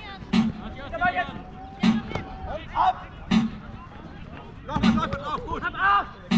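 Jugger timekeeping drum struck once every second and a half, counting the stones of play, with voices shouting between the beats.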